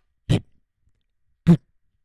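Two short beatboxed kick-drum sounds made with the mouth, a little over a second apart, the second slightly louder.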